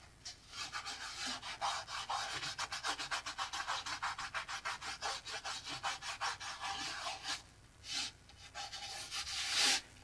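Fingers rubbing dried masking fluid off cold-pressed watercolour paper: a quick, even run of dry scrubbing strokes, several a second, with a short pause about three quarters of the way through.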